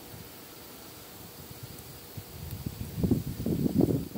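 Wind blowing across the microphone: a low steady rush at first, then gusting into louder, uneven rumbling buffets over the last second and a half.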